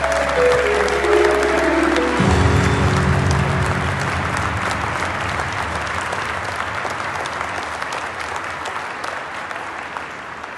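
The song's closing music ends about two seconds in, a few descending notes over a held low note, and a large audience applauds, the applause slowly fading.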